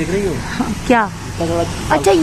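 Voices speaking in short bursts over a steady low hum.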